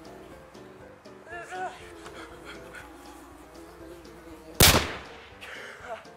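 Background music, with a few short squeaky chirps about a second and a half in and a single sudden, loud bang about three-quarters of the way through that fades over about half a second.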